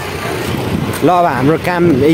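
A man's voice talking close to the microphone, starting about a second in, after a second of steady street background noise.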